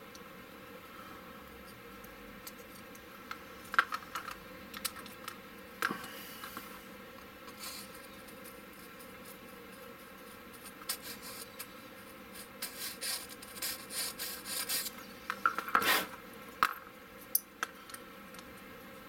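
Hobby knife blade scraping and twisting in a small hole in a plastic model hull, reaming it out to fit a magnet: scattered short scratches, busiest in the second half.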